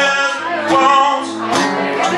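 A man's voice singing over an acoustic guitar strummed in chords, struck about once a second, in a live solo performance.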